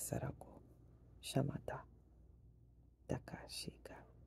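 A woman whispering in three short breathy bursts, with quiet pauses between them.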